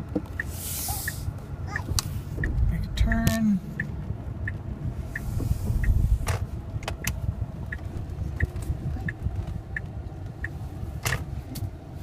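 Tesla Model S turn-signal indicator ticking steadily, about two ticks a second, inside the car's cabin over a low rumble, with a few knocks scattered through.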